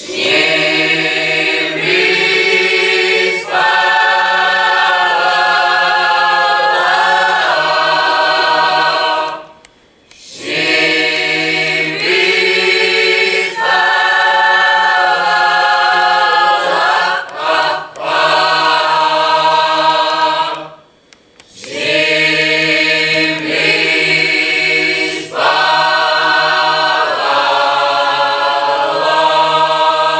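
Mixed choir of a folk ensemble singing unaccompanied, men's and women's voices together, over a steady low held note. The song comes in three phrases of about ten seconds each, with a brief breath pause between them.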